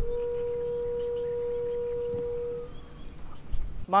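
Background music: one long held note that fades out after about two and a half seconds, over a low rumble.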